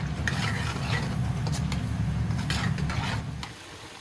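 Chicken pieces frying in a wok while a metal spoon stirs and scrapes them against the pan, over a steady low rumble. The sound falls away shortly before the end.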